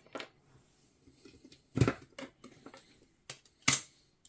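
Hands working an open test-bench PC and its RAM sticks: a handful of sharp clicks and knocks, the loudest about two seconds in and just before the end.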